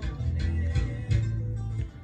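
Playback of a recorded electric bass line over a drum beat: low, sustained bass notes that change about a second in, with the beat ticking steadily on top.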